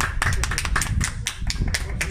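A small group of people clapping, a quick irregular patter of hand claps.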